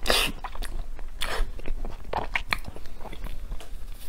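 Close-miked chewing and biting of a soft, cocoa-dusted mochi: a string of short, irregular mouth sounds, the strongest about a second apart.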